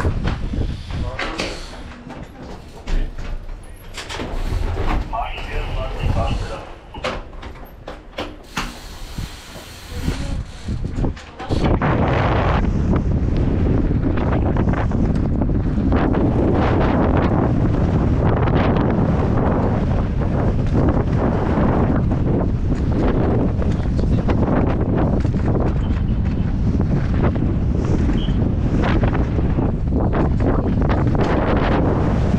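Quieter, uneven sounds with a few clicks for the first eleven seconds or so, then a sudden jump to a loud, steady rush of wind on a helmet-mounted camera's microphone mixed with a downhill mountain bike's tyres rolling over dirt and loose gravel, which runs on to the end.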